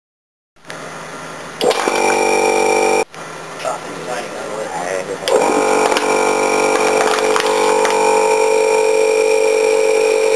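Electric vacuum pump running with a steady droning whine as it draws the air out of a plastic soda bottle, collapsing it. The pump starts about a second and a half in, stops briefly around three seconds, and runs on again from about five seconds.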